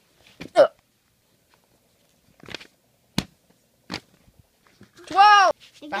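A short vocal yelp, then three sharp taps or knocks as plush toys are handled on a table, then a loud, drawn-out vocal 'ooh' whose pitch rises and falls near the end.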